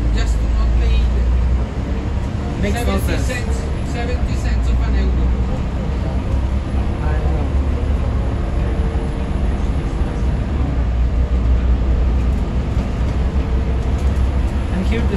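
Inside a Transmilenio bus under way: a steady low rumble of engine and road noise fills the cabin.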